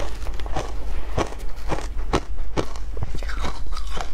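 Shaved ice being crunched between the teeth, picked up close by a clip-on microphone, with a metal spoon scooping through the ice; sharp crunches come about twice a second.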